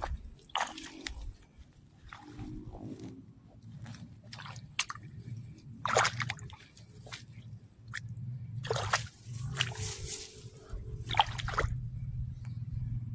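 Water sloshing and splashing in irregular strokes among rice plants, over a steady low rumble.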